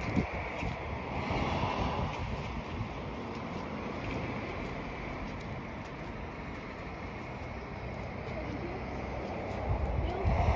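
Wind blowing across the microphone: a steady rush of noise with uneven low gusts.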